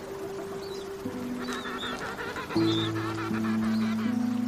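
King penguins in a colony calling, several overlapping calls mostly in the second half, over background music of sustained low notes.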